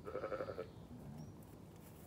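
A Zwartbles sheep gives one short, quavering bleat.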